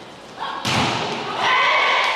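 A volleyball hit hard at the net with a sharp thud a little over half a second in, followed by players shouting and cheering in an indoor sports hall.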